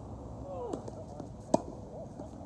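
One sharp pop of a tennis ball struck by a racquet, about one and a half seconds in.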